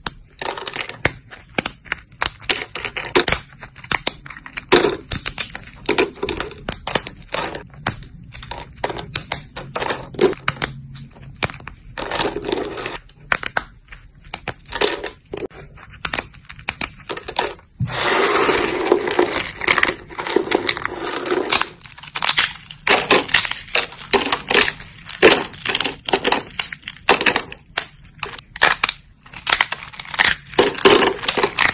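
Thin dry soap plates snapped and crumbled between the fingers: a dense, irregular run of crisp cracks and crunches. About two-thirds of the way through there is a stretch of unbroken crunching lasting a few seconds.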